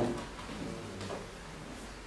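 Quiet room tone in a small room during a short pause in a man's speech, with the tail of his last word at the very start.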